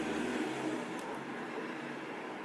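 Steady background noise: a low hum under an even hiss, with a faint click about a second in.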